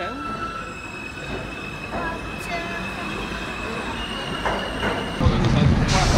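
New York City subway train in the station, its wheels squealing in several steady high tones over a rumble. About five seconds in, the sound cuts abruptly to louder street noise.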